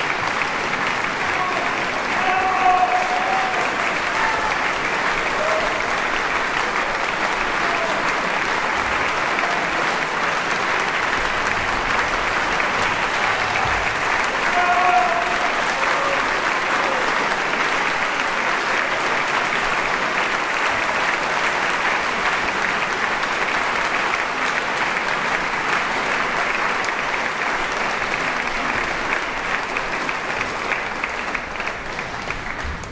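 Audience applauding steadily, with a few brief shouts from the crowd rising above the clapping near the start and about halfway through.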